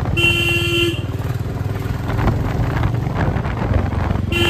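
Motorcycle engine running on the move in road traffic, with a vehicle horn giving one short, steady-pitched honk near the start.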